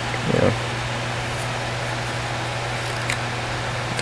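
Steady low hum and hiss of background noise, with one faint, sharp click about three seconds in as the Boker Haddock folding knife's blade is opened and locks.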